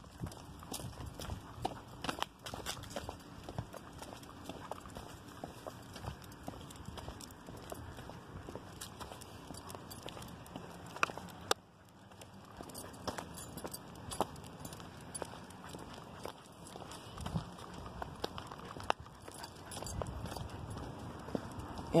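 Footsteps of a person and a small dog walking on a concrete sidewalk: a steady run of light, irregular clicks and scuffs.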